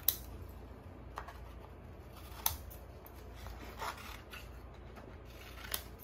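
Scissors snipping through a sheet of printer paper, about five separate cuts spaced roughly a second apart, the first and the one in the middle the sharpest.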